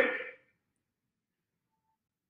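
A man's voice trailing off in the first half-second, then near silence.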